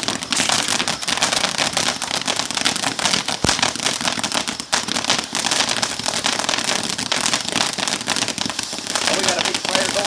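A "Desert Sky" ground fountain firework spraying sparks, with a dense crackle and hiss that starts abruptly and keeps going, plus one sharp pop about three and a half seconds in.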